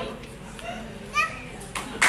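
A small child's short, high-pitched voice rising in pitch about a second in, during a lull in a room full of people.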